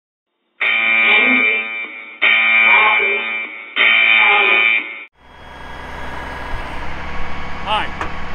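Three long, loud horn blasts, each about one and a half seconds, starting and stopping abruptly. From about five seconds in, a vehicle engine idles with a steady low rumble.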